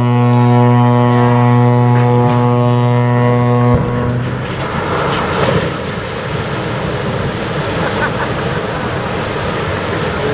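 A ship's horn sounds one long, low, steady blast that stops about four seconds in. It gives way to the loud rushing splash of water as the cargo ship is side-launched into the canal.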